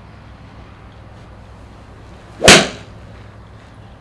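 Golf iron striking a ball off a hitting mat: a single sharp crack about two and a half seconds in, the sound of a cleanly struck shot.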